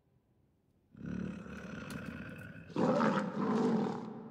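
A tiger roaring: the sound starts about a second in and swells into a louder roar near the end, then fades away.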